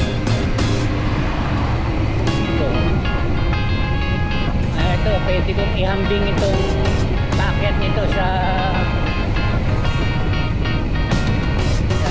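Background music with a singing voice, laid over a steady low rumble.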